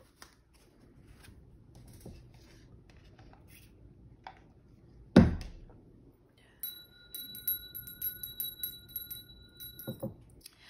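Tarot cards handled and set down on a table, with one loud thump about five seconds in. Then a small brass hand bell rings for about three seconds, its clapper striking many times over a steady ringing tone that stops abruptly.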